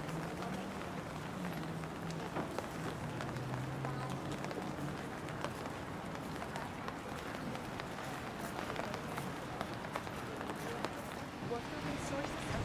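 Indistinct voices of people talking, heard over a steady outdoor background hiss with scattered light clicks.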